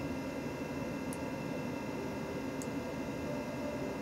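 Steady hum and hiss of running computer equipment, with a few thin steady whines. Two faint short ticks come about one and two and a half seconds in.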